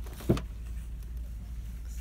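A single short thump about a third of a second in, over a steady low background rumble.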